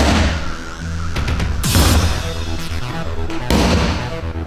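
Background music with a heavy bass line, over which a long-handled sledgehammer hits a large tractor tyre three times, about two seconds apart.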